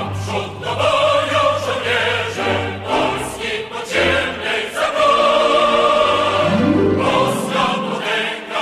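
Choral music with orchestral accompaniment, sustained voices over a dense instrumental backing, with a rising glide low in the texture near the end.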